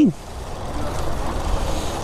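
Outdoor street background noise: a steady low rumble, typical of road traffic.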